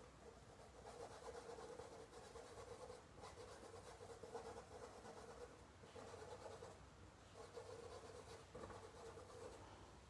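Faint, scratchy rubbing of a small paintbrush blending orange fabric paint into cloth, in repeated light strokes.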